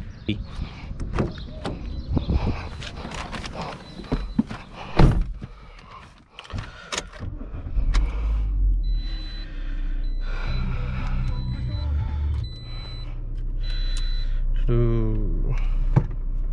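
Getting into a 2018 Toyota Corolla: clicks and knocks, then the door shutting with a thud about five seconds in. About eight seconds in, the 1.6-litre engine starts and idles steadily while a high chime repeats several times.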